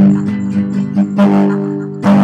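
Classical guitar strummed in a steady rhythm, with the chords ringing between strokes and the hardest strokes at the start and about a second in.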